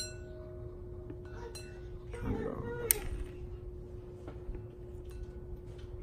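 Small clicks and clinks of wires and alligator clips being handled on a wiring board, with one sharp click about three seconds in, over a steady faint hum.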